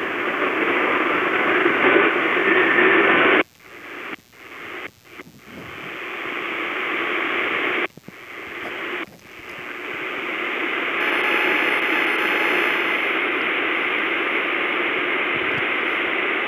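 Hiss and static from a CS-106 AM pocket receiver on a channel with no clear station. The sound cuts out suddenly several times between about three and nine seconds in, and each time swells slowly back, as when the receiver is stepped from frequency to frequency. After that the hiss runs on steadily.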